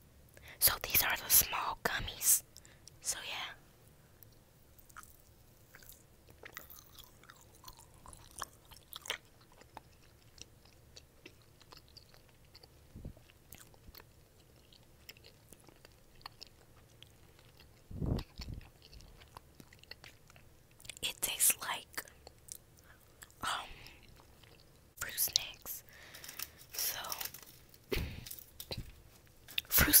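Chewing and biting gummy pizza candy, with sticky mouth sounds coming in scattered short bursts separated by quiet stretches.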